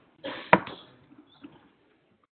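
A single sharp knock about half a second in, just after a brief rustle, then a few faint small sounds.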